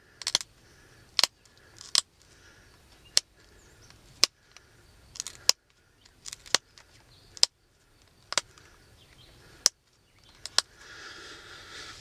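Stone arrowhead being pressure-flaked with an elk antler tine: sharp little clicks as chips snap off one edge, irregular, about one a second.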